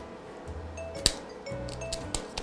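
Sharp metallic clicks of a spring-loaded self-adjusting wire stripper handling speaker wire: one at the start and a louder one about a second in, over quiet background music.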